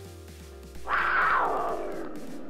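Background music with a low steady drone. About a second in, a sudden rushing sound effect starts and fades downward over the next second and a half.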